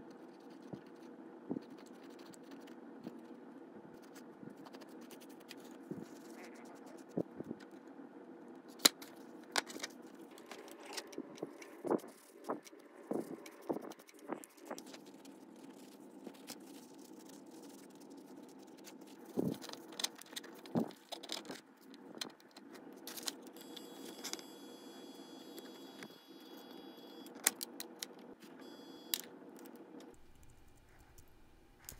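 Small metal parts of an HO model streetcar chassis handled and wiped with a paper towel: scattered light clicks and scrapes over a steady low background hum.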